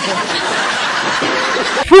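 Many people laughing together, a loud, even wash of laughter like a studio audience, cut off near the end by a man's voice starting to ask a question.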